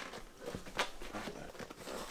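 Faint rubbing and soft ticks of a knobby mountain-bike tyre being worked onto the rim by hand.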